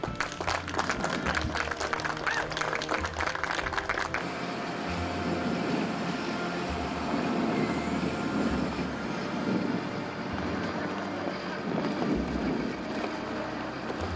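A crowd applauds for about four seconds. Then comes a steady low engine rumble from the mobile crane hoisting the centrifuge gondola.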